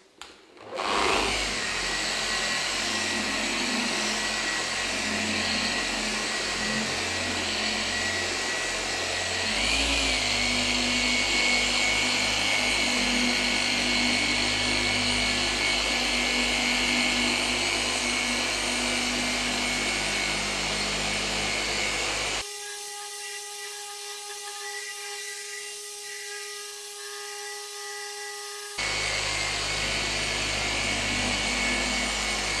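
Rupes dual-action polisher with a foam pad running on car paint, a steady motor hum with the pad rubbing. It starts about a second in and changes speed near ten seconds. About two-thirds through it drops to a quieter, thinner hum for several seconds before the full sound returns near the end.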